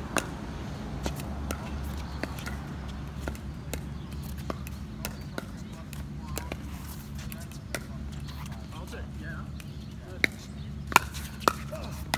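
Pickleball rally: sharp pops of the plastic ball off paddles and the court, spread out, with a quick run of loud hits from about ten to eleven and a half seconds in. A steady low hum runs beneath.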